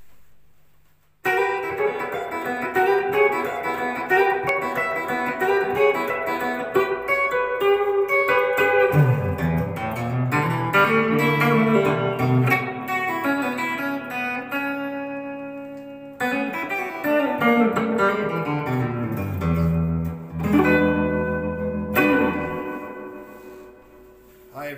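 Grote hollow-body archtop jazz guitar played electric: a short instrumental of single-note lines and chords. Low runs fall in pitch twice, there is a brief gap about two-thirds through, and it ends on a chord that rings out and fades.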